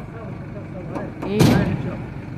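A single sudden loud bang about one and a half seconds in, over steady street traffic noise and a woman's voice.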